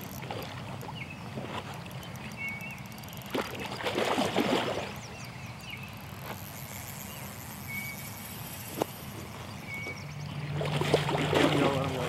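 Water splashing and sloshing as a hooked flathead catfish thrashes at the pond's edge while being landed. The splashing is loudest in a burst about four seconds in and again near the end.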